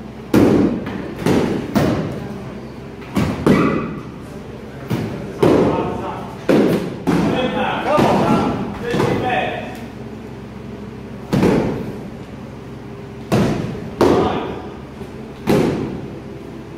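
Padded soft-kit weapons striking padded shields and fighters in a sparring bout: about a dozen sharp thumps at an irregular pace, each echoing in the large hall.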